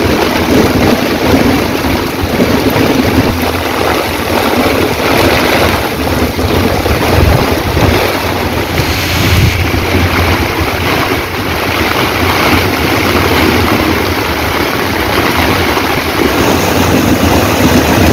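Heavy rain and strong wind in a storm, a loud, steady rushing noise with wind buffeting the microphone.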